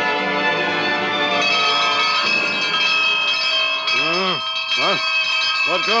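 Orchestral brass music gives way, about a second and a half in, to bells ringing steadily, a radio-drama alarm for a prison escape. From about four seconds in, short shouted calls sound over the bells.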